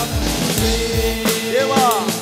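Worship band music: drum kit strokes over sustained instrument tones, with a few sliding notes near the end.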